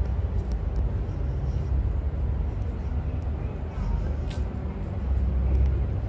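Outdoor city ambience at night: a steady low rumble with faint distant voices.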